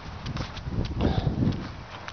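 Footsteps on dry grass and leaf litter, with two heavier thuds about a second apart, mixed with scattered clicks and rustle from a handheld camera being carried.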